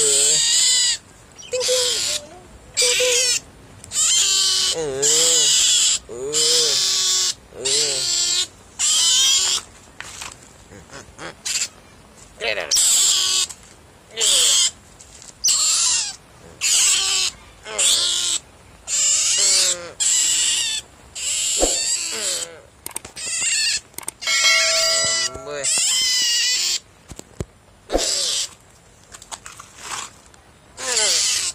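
Young otter calling with high-pitched squeals, repeated about once a second with short gaps between.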